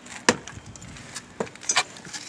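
Metal blade prying and splitting the rotted wood of an old window sash: a few sharp cracks and scrapes, the loudest just after the start and a quick cluster of three in the second half. The wood is soft with rot and breaks away easily.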